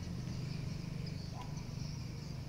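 Outdoor street ambience: a steady low rumble of distant traffic with faint high-pitched chirping over it.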